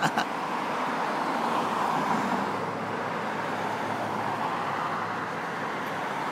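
Road traffic noise: a car driving past on the street, a steady rush of tyre and engine noise that swells slightly about two seconds in and then evens out.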